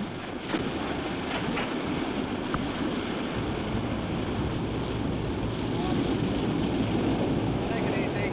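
Steady engine drone mixed with wind and sea noise on an open boat deck. It grows slowly louder, with the drone settling in about halfway through, and a few light knocks near the start.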